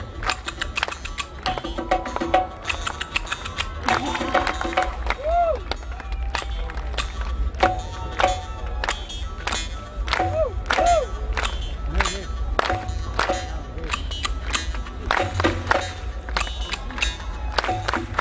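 Live Rajasthani Manganiyar folk music: a lead singer's voice in sliding, ornamented phrases over frequent, sharp percussion strikes from the ensemble.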